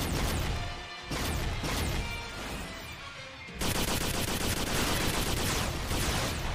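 Sci-fi battle sound effects from a 1980s animated series: rapid laser and energy-cannon fire. The firing eases a second in and comes back dense and rapid just past the middle.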